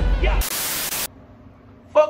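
The tail of intro music with a heavy bass, then a half-second burst of static hiss that cuts off suddenly about a second in, used as a transition effect; faint room hiss follows.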